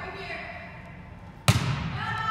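A volleyball struck once by a player, a single sharp smack with a ringing echo, about one and a half seconds in. Faint voices are heard before it.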